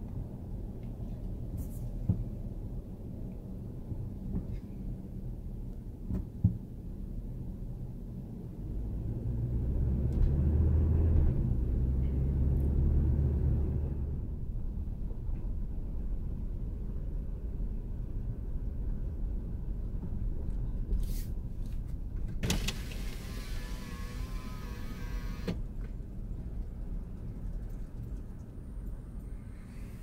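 Steady low engine and road rumble heard from inside a car's cabin as it drives slowly, growing louder for a few seconds about ten seconds in. About two-thirds of the way through, a car's electric window motor whirs for about three seconds.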